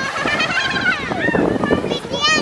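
People's voices calling out, with high-pitched calls that rise and fall, over a steady rough background of wind and surf noise.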